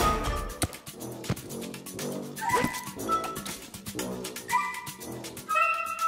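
Playful cartoon background music with short sliding notes, over light clicks and taps.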